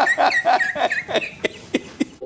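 A high-pitched, rapid laugh, about five yipping 'ha's a second, that tapers off about a second in and fades to a few short breaths.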